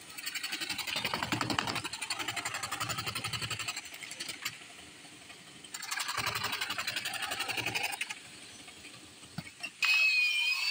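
Chapaka, a hand-held electric jigsaw-type wood cutter, sawing through a thin board with a fast, even stroke in two spells: about three seconds from just after the start, then about two seconds more after a short pause.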